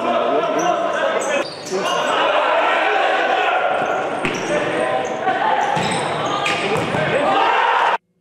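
Live sound of a futsal match in a large sports hall: players' shouts and calls echo over the thuds of the ball being kicked and bouncing on the court. It cuts off suddenly at the end.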